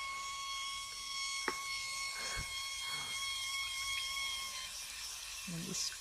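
Water from a garden hose running into a plastic bucket of laundry-soap solution, a steady hiss as the stream churns the water to mix it. A single sharp click comes about one and a half seconds in.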